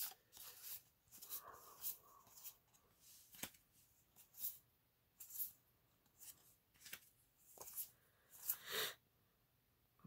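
Magic: The Gathering trading cards being slid one at a time from the back of a hand-held stack to the front. They make a dozen or so faint, brief swishes and clicks, irregularly spaced about a second apart.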